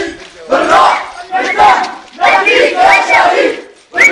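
Crowd of protesters shouting slogans together in rhythmic phrases, about one phrase a second with short breaks between.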